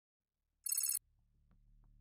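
A short, high-pitched, rapidly pulsing electronic trill, like a brief phone ring, lasting about a third of a second a little under a second in: a transition sound effect. The rest is near silence.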